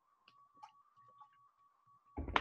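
Near silence: room tone with a faint steady high-pitched hum and a few faint ticks.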